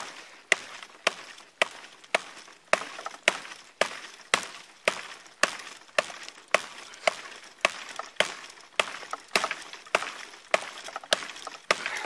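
Schrade SCAXE4 tactical tomahawk chopping into a dead conifer log with fast, heavy strokes, about two sharp chops a second at an even pace.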